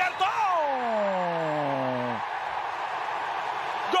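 A male TV football commentator's long, held goal shout, falling steadily in pitch over about two seconds before it cuts off, over steady stadium crowd noise.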